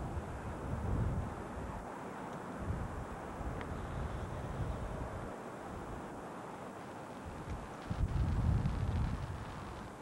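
Wind buffeting the camcorder microphone over a steady background hiss, with the strongest gusts about a second in and again near the end.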